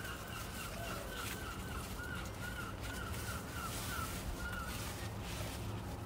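A bird calling: one short, clear note repeated about two to three times a second at a steady pitch, stopping about five seconds in.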